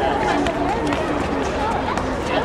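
Outdoor chatter: voices of people talking over a steady low background noise, with a short click right at the start.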